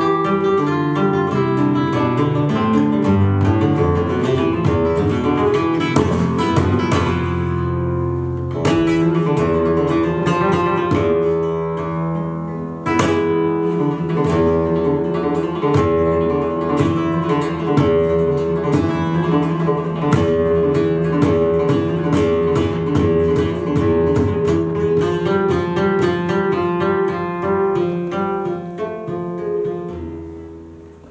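Solo flamenco guitar playing a soleá: picked melodic runs and bass lines, broken by a few sharp strummed chords, one about nine seconds in and a louder one near the middle.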